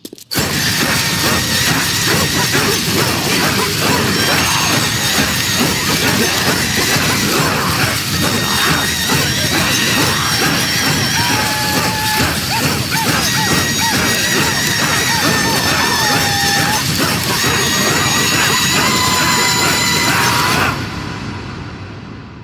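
Loud, dense cartoon soundtrack: music mixed with crashing and smashing sound effects. It stops abruptly about 21 seconds in and dies away.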